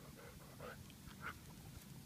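Faint sounds from a heavily pregnant Weimaraner: a few short, soft noises.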